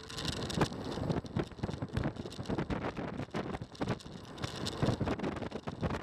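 Wind buffeting the microphone with a dense run of irregular knocks and rattles from a Xiaomi M365 electric scooter riding fast over rough, broken pavement.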